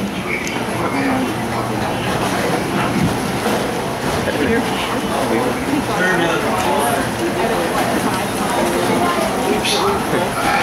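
Indistinct voices talking throughout over a steady low hum and wash of background noise.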